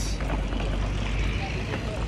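Steady low rumble and hiss of airport apron noise from aircraft engines, with wind buffeting the phone microphone.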